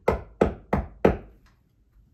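Hammer driving a nail into a wall to hang a picture frame: four quick, sharp strikes about three a second, the last the loudest, then it stops.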